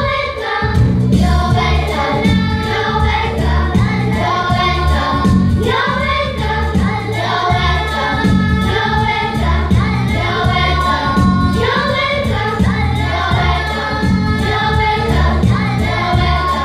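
A group of children singing a song in English together into stage microphones, over instrumental accompaniment with a steady low beat.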